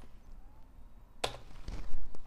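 A few separate taps on a computer keyboard as keys are pressed to save and close a file in a text editor, the clearest about a second and a quarter in.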